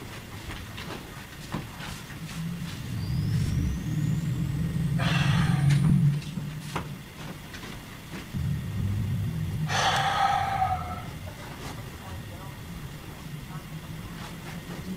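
A man's voice talking off-camera, muffled and indistinct, in two stretches, with two louder harsh bursts about five and ten seconds in.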